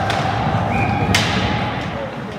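Ice hockey rink sound: a single sharp crack of a hockey impact about halfway through, over continuous arena rumble and a steady held tone.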